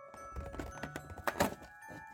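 Perforated cardboard door of an advent calendar being pushed in and torn open: a low thud about half a second in, then two sharp cracks of tearing cardboard about a second and a half in.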